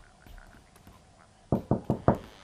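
Knuckles rapping quickly on a wooden door, four fast knocks starting about a second and a half in, after a quiet start.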